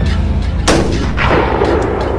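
A sharp bang about two-thirds of a second in, then a second blast with a long rumbling decay, over a low sustained music bed.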